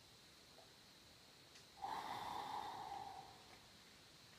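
A single exhale close to the microphone, a soft rush of breath about a second and a half long that starts about two seconds in and fades out, against quiet background.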